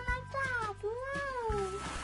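Two meow-like calls, each gliding up and then down in pitch, over steady background music.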